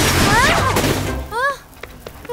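Cartoon soundtrack: a loud, noisy sound effect with background music underneath, where a small toy rocket has just come down smoking. Over it come short exclaimed vocal glides and a startled "ah", then everything cuts off sharply about a second and a half in.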